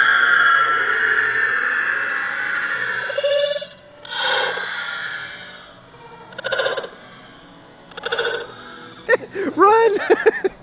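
A man laughing hard: a long, high-pitched squeal of laughter that slowly falls away over about three and a half seconds, then three shorter bursts of laughter.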